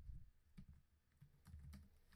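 Faint computer keyboard keystrokes, a few scattered key presses.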